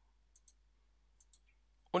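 Faint computer mouse button clicks: two quick pairs of clicks, the second pair about a second after the first.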